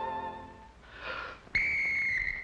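A whistle blown once, giving a shrill steady tone of about a second that starts abruptly. It comes just after a short breath and the fading end of a held sung note.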